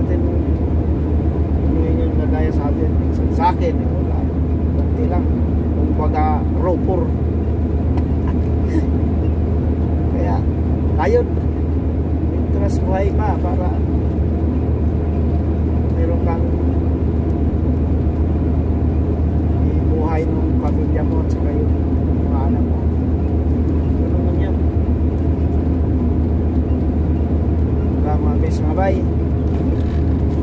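Heavy truck driving at highway speed, heard from inside the cab: a steady low drone of engine and road noise. A faint voice comes and goes now and then.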